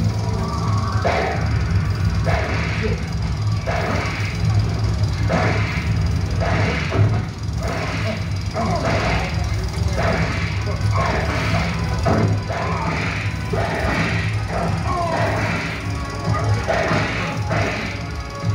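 Indian action film's soundtrack played loud over open-air loudspeakers: music under a long run of sharp hits, about one or two a second, with voices and a steady low hum.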